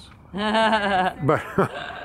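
A person laughing: one drawn-out, wavering laugh, then a few shorter, falling ones.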